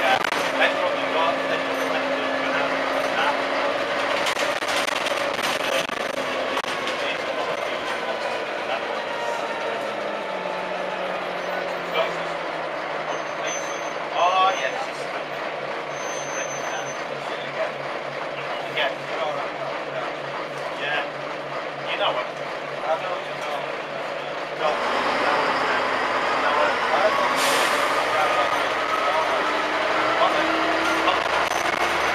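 Bus interior: the diesel engine's note falls as the bus slows, then it idles with a low steady pulse and odd rattles for about twelve seconds. About 25 seconds in, the engine grows suddenly louder as the bus pulls away, with a short hiss of air a couple of seconds later.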